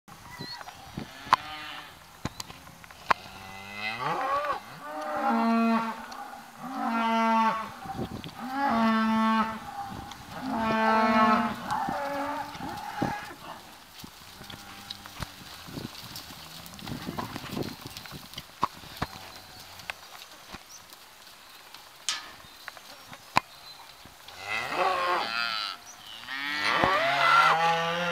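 Cattle mooing: a run of about five long, evenly spaced moos, a quieter stretch, then more moos near the end. A few sharp clicks fall between the calls.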